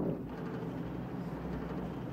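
Steady drone of a B-17 bomber's four radial engines, heard from inside the cockpit.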